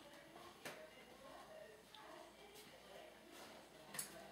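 Near silence: faint background hiss with a few soft clicks, the sharpest right at the end.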